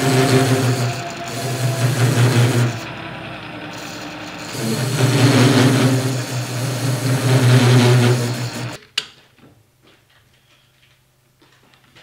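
Metal lathe turning a ductile iron bar, the cutting tool taking a steady cut with the motor and gearing humming underneath, rising and falling in loudness. It cuts off suddenly about nine seconds in, leaving a few faint clicks.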